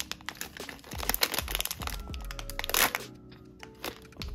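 A foil blind-box bag crinkling and tearing as it is pulled open by hand, a dense run of crackles that is loudest near the end of the third second.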